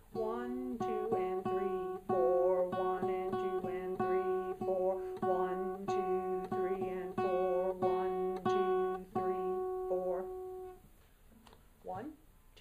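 Acoustic guitar playing a beginner's exercise of repeated plucked F sharp notes on a steady beat, with a woman's voice singing along. The playing stops about eleven seconds in.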